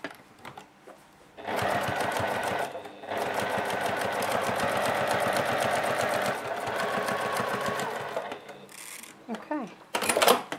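Juki TL-2010Q semi-industrial straight-stitch sewing machine running fast in two bursts, a short one of about a second and a half and then a longer one of about five seconds, with rapid, even needle strokes. It is sewing a long basting stitch, holding the fabric layers together.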